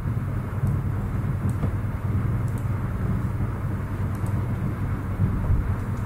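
Steady low hum with a haze of room noise, and a few faint clicks scattered through it.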